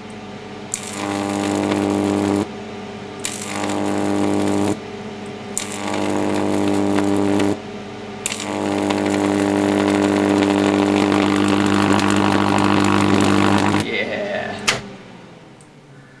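High-voltage arcs drawn from an 8 kV 375 mA neon sign transformer running at full power with its current shunts removed: a loud mains buzz with a crackling hiss, coming in four bursts of one to five seconds as the arc is struck and broken. A single sharp crack sounds near the end.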